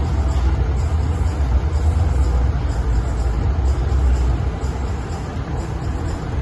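Steady low rumble with a faint even hiss above it: the room noise of a large exhibition hall.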